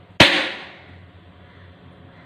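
A single cleaver chop through a whole fish onto a plastic cutting board: one sharp knock just after the start that dies away within about a second.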